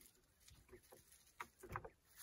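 Faint rustling and scraping of a plastic bag being pushed down into a mesh-wrapped jar: a few short bursts in the second half, the loudest near the end.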